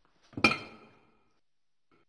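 A single sharp clink with a ringing tone that fades within about a second, like a small glass, porcelain or metal object being struck.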